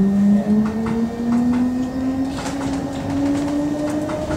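London Underground train pulling away from a station, heard from inside the carriage: its traction motors whine in a pitch that rises steadily as the train gains speed, over a running rumble with occasional clicks from the wheels.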